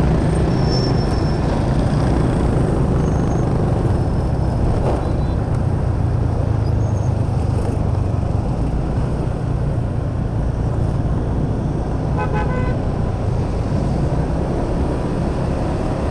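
Steady engine drone and road and wind noise of a motorcycle riding through city traffic. A vehicle horn honks briefly about three quarters of the way through.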